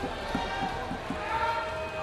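Members of parliament thumping their desks in approval in the Lok Sabha, a regular run of dull knocks about three a second, with voices in the chamber behind them.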